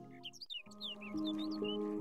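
Soft meditation music of sustained held tones with several short bird chirps over it. The music breaks off about half a second in, then new held notes come in.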